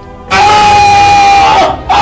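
A loud burst of crowd noise with one long, level high cry held over it, starting just after the beginning and cutting off about a second and a half later.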